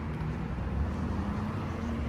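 Distant road traffic: a steady low rumble.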